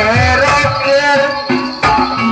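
Live Banyumasan gamelan music for an ebeg hobby-horse dance: regular drum strokes under a wavering, sliding melody line, with jingling percussion on top.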